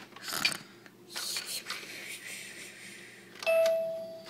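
A short rustle near the start and a couple of seconds of soft hiss, then, about three and a half seconds in, a single clear electronic chime tone held just under a second, from a toy.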